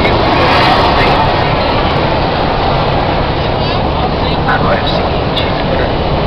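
Steady noise of a moving coach bus heard from inside the passenger cabin, with passengers' voices and chatter over it.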